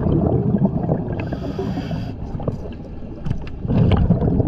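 Scuba diver breathing through a regulator underwater: rumbling, gurgling bursts of exhaled bubbles, with a short hiss between about one and two seconds in, and another bubble burst near the end.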